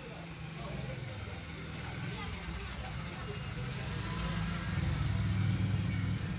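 A low, steady rumble that grows louder toward the end, with faint voices in the background.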